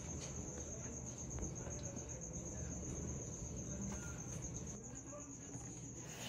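A steady, high-pitched pulsing trill that keeps on without a break, over faint low background noise.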